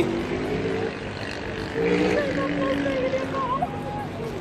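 Voices of passers-by talking nearby, coming and going, over a steady low drone of engines.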